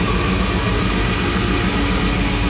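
Death metal band playing live and loud: bass, guitars and drums in a dense, fast, churning low rumble.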